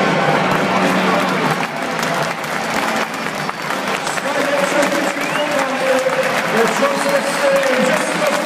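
Football crowd clapping, with a long steady held note, as in a chant, joining about halfway through.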